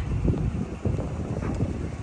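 Wind blowing across the microphone, an irregular low rumble.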